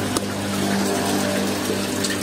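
Small electric pump humming steadily over the hiss of bubbling, moving water in a koi tank.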